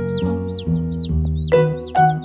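Baby chicks peeping: short, high, arching calls several times a second, over background music.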